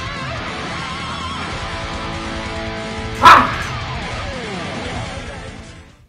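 Distorted electric guitar playing an instrumental metal passage over a backing track, with a sudden very loud short burst about three seconds in followed by a note sliding down in pitch. The music fades out near the end.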